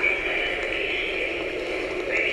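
Steady airliner cabin noise: an even, unbroken hiss-like rush.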